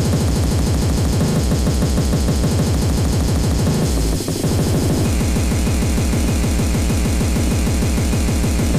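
Speedcore track: a very fast, relentless run of distorted kick drums under harsh, noisy synth layers. The beat drops out briefly about halfway, then comes back.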